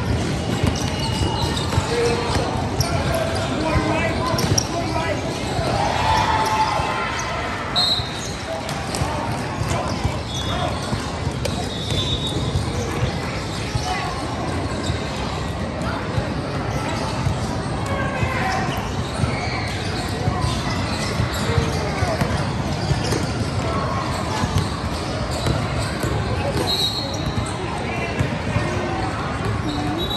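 A basketball bouncing on an indoor hardwood-style court, with overlapping voices of players and spectators echoing in a large hall. A few short high tones cut through now and then.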